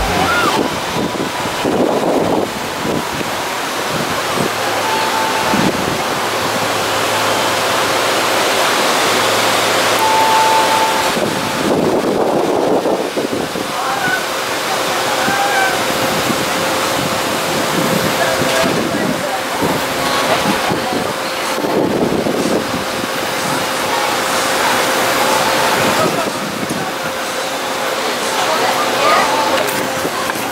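Ocean surf washing steadily onto the beach, mixed with wind on the microphone, and faint voices of people talking in the background.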